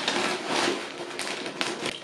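Paper gift bag rustling and crinkling as it is opened by hand, with a run of short crackles, while a cellophane-wrapped box is pulled out.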